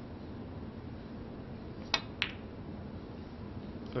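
Two sharp clicks of snooker balls about a third of a second apart: the cue tip striking the cue ball, then the cue ball hitting a red, in a shot that pots the red.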